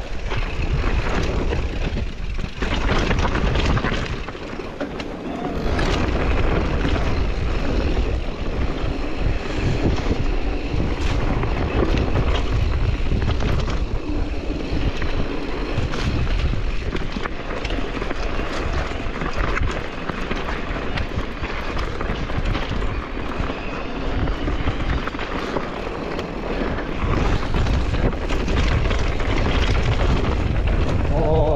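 Mountain bike riding fast downhill on a rocky dirt trail: wind rumbling on the handlebar-mounted microphone and tyres crunching over gravel and stones, with frequent clicks and knocks from the bike as it bounces over the rough ground.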